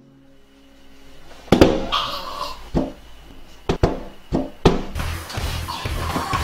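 About six sharp thuds of hands banging on a window pane, spread unevenly over three seconds, after which music with a steady beat comes in near the end.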